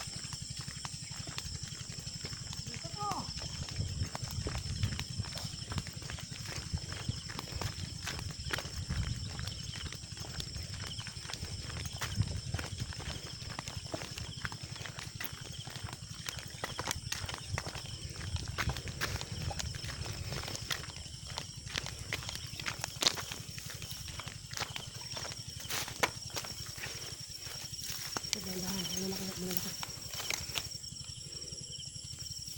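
Footsteps on a dirt path strewn with dry leaves: an irregular run of light crunches and scuffs from people walking, with a steady high-pitched hum underneath.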